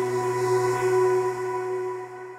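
Slow, atmospheric synth pad chord held on a ROLI Seaboard RISE, with a steady low sub note under it, played through Ableton Live's MPE Airy Pad & Sub preset.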